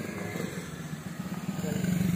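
A motorcycle engine approaching along the road, its steady running growing louder toward the end.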